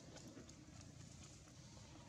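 Near silence: faint outdoor background with a low rumble and a scattering of faint short ticks.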